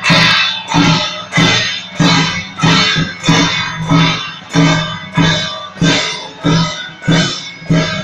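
Temple-procession percussion: gongs and cymbals with a drum, struck together in a steady beat a little under two strikes a second. Each strike rings out and fades before the next.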